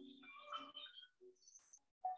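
Near silence, with only a few faint, brief sounds.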